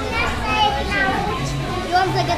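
Young children's voices chattering and talking over one another.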